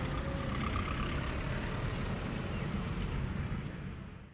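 Steady outdoor road-traffic rumble, with no single vehicle standing out, fading out near the end.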